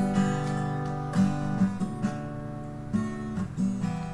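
Background music: an acoustic guitar strumming chords, changing chord every second or so.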